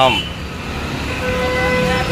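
Street background: a steady low rumble of traffic, joined a little over a second in by a long, steady horn-like tone that holds on.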